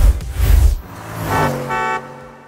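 A short channel audio logo: a deep whooshing hit, then a held tone that rings on and begins to fade near the end.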